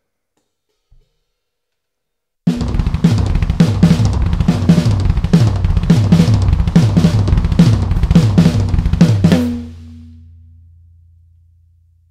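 Drum kit played in a fast, steady run of fills, the kick drum alternating with the toms and snare in quick groupings (quads and sextuplets), with cymbals over it. It starts about two and a half seconds in and stops suddenly about three-quarters of the way through, leaving a low tom ringing and fading away.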